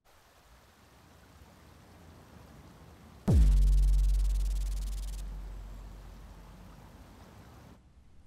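A faint hiss swells for about three seconds. Then a single sudden deep boom drops quickly in pitch into a low rumble, like a rumble from the core of the earth, that fades slowly over the next four seconds.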